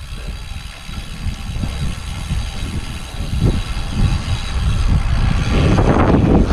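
Wind rushing and buffeting over the camera microphone of a cyclist riding a road bike, a rumbling noise that grows steadily louder as the bike picks up speed.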